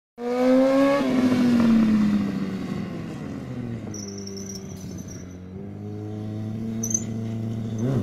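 Motorcycle engine revving up hard, then easing off and running at a steady pitch for a few seconds, before revving up again at the very end.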